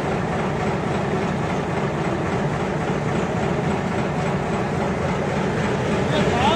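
Fishing boat's engine running steadily, a continuous low drone mixed with a rush of wind and water.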